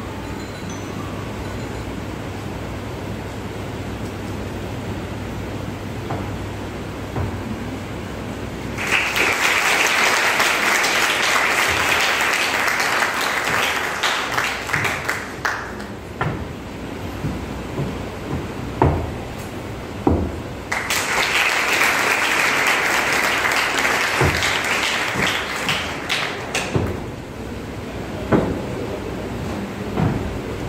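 Audience applauding in two rounds of about six seconds each, the first starting about nine seconds in and the second about twenty-one seconds in, with a low steady hum and a few scattered knocks before and between them.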